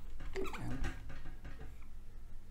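Dry-erase marker squeaking against a whiteboard as it writes, with a few short squeals in the first second.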